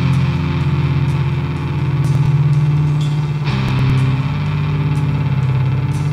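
Band recording of 1990s grunge-style alternative rock: electric guitar, bass and drums playing dense, sustained chords, with a change of chord about three and a half seconds in.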